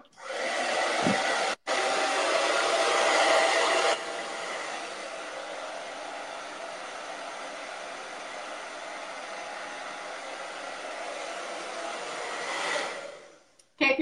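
Handheld blow dryer running steadily, drying hair to make it completely dry before heat styling. It is louder for the first four seconds, then quieter, and shuts off shortly before the end.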